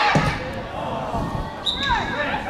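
Football being kicked and bouncing on the pitch, with a sharp thud just after the start and duller thuds after it, while players shout to each other. A short, steady, high whistle sounds near the end.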